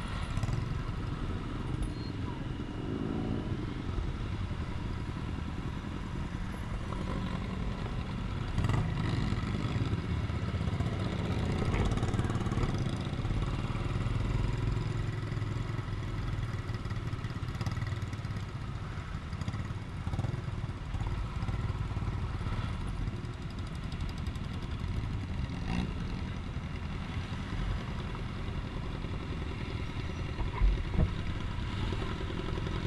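Motorcycle engines running at low speed in a slow-moving group of bikes, heard from one of the bikes, steady throughout with a slight rise in the middle.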